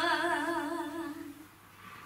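A solo female voice sings a slow, unaccompanied doină, a Romanian folk lament, holding a note with wide vibrato. The note fades out about a second and a half in, leaving a short pause for breath.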